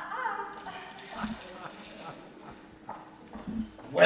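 Footsteps on a wooden stage floor, five or six hard steps at an uneven pace, after a brief voice at the start.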